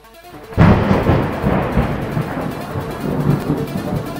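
A thunder sound effect over intro music: a sudden loud crack about half a second in, followed by a long rolling rumble.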